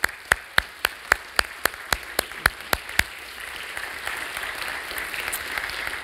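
Congregation applauding. One pair of hands close by claps loudly and evenly, about four claps a second, for the first three seconds, over the spread applause of the room, which carries on after it stops.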